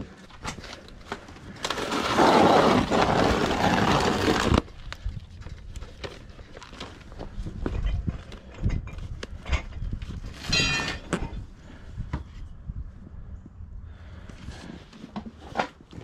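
Plastic storage tubs being lifted and shifted, with a loud scraping rustle for about three seconds near the start that cuts off suddenly. After it come scattered clicks and knocks of things being handled: records and boxes being sorted.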